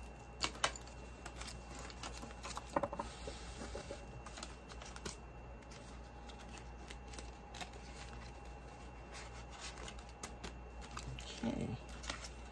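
Scattered light clicks and rustles of a plastic ring binder's sleeves and pages being flipped and handled, with paper dollar bills being slid into a pocket, over a faint steady hum.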